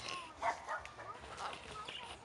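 Parrots calling: a quick run of short squawks, the loudest about half a second in, with a few brief whistled glides.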